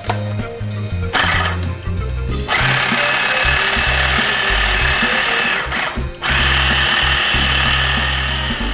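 Small electric food chopper running under hand pressure on its lid, blending a thick cheese mixture: a short burst about a second in, then a long run, a brief stop around six seconds, and running again.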